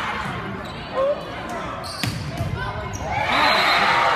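Volleyball being struck during a rally, two sharp smacks about a second apart, over spectators' chatter and shouts. About three seconds in, the crowd breaks into loud cheering and shouting.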